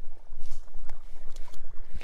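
Rubber boots splashing and squelching through a shallow boggy pool, with a few short sharp splashes over a steady low rumble on the microphone.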